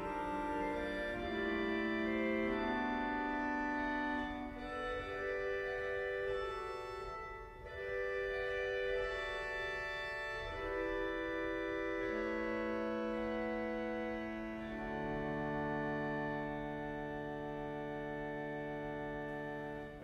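Pipe organ playing slow, sustained chords that change every second or two, settling into one long held chord for the last few seconds.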